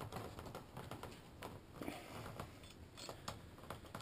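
Faint, scattered light clicks and clinks of a steel Conibear body-grip trap being handled while its spring is held compressed with a rope and the safety hook is sought.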